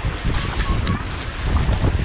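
Wind buffeting the microphone over the rush and splash of water along a windsurf board sailing at speed.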